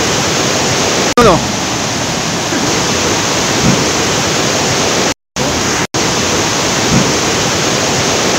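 Steady, loud rushing of a waterfall and the river below it, swollen by the rainy season. A short voice cuts in about a second in, and the sound drops out completely twice, briefly, a little past the middle.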